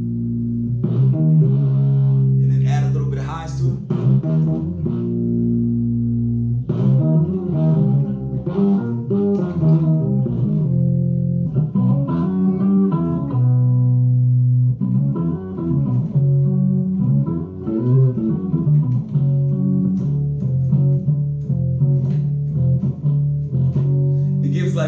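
Six-string electric bass played through its built-in POG octave effect, with the low-octave voice blended into the natural tone. Long-held low notes and chords alternate with quicker melodic runs.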